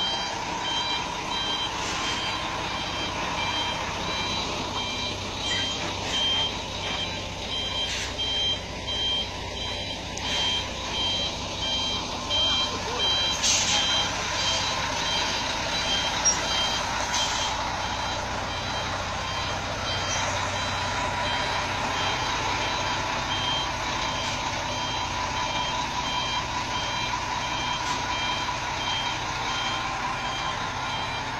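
A heavy truck's reversing beeper sounding a steady run of short, evenly repeated high beeps over the low, steady running of its engine as the B-double backs up.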